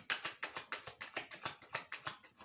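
A tarot deck being shuffled by hand: quick, repeated soft card slaps, about seven a second.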